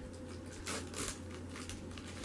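A small clear plastic bag crinkling and rustling as it is pulled open by hand, with two louder crinkles around the middle.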